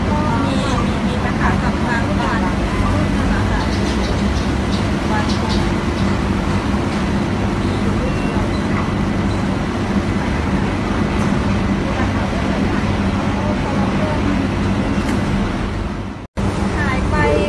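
Thai speech at a crowded press scrum, partly masked by a steady low mechanical drone like nearby traffic.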